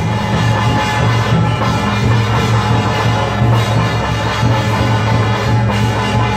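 Loud, continuous percussion music: drums with sustained ringing metal percussion, no break or pause.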